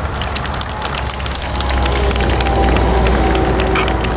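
Audience applauding with many scattered hand claps, over the low steady rumble of road traffic.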